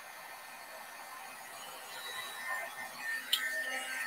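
Wagner embossing heat gun blowing a steady hiss of hot air to melt embossing powder. About three seconds in there is a click and a faint whine, and then the hiss dies away.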